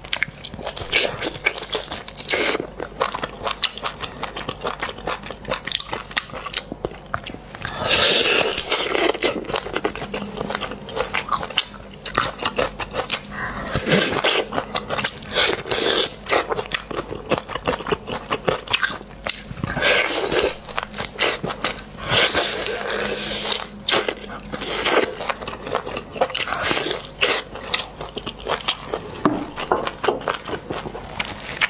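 Close-miked eating of spicy braised beef bone marrow: wet biting and chewing with many small clicks, and several longer sucking noises, each about a second, as the marrow is drawn out of the cut bone.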